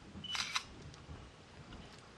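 Samsung Galaxy Ace's camera shutter sound, played through the phone's speaker about half a second in as a flash photo is taken, with a short high beep just before it.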